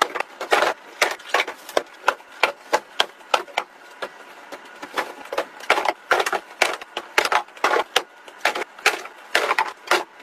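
Cardboard boxes being tossed and landing on a pile of other boxes: a string of irregular sharp knocks, about three a second, some in quick clusters.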